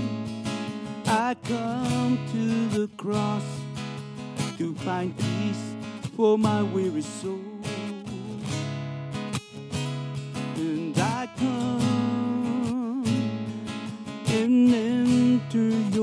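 Worship song played by a band, led by strummed acoustic guitar.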